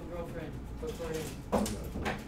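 Faint, indistinct speech, with a brief sharp sound about one and a half seconds in.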